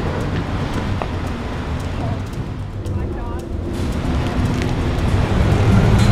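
Street ambience: steady traffic noise with faint voices about two and three seconds in.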